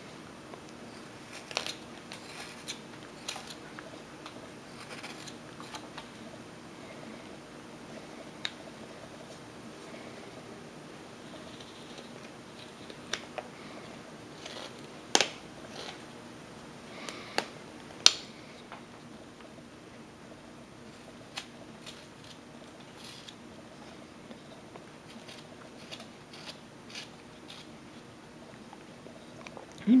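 Small carving knife slicing chips off a hand-held wooden figure: scattered short, crisp cuts and clicks, a few sharper ones around the middle, with a faint steady hum underneath.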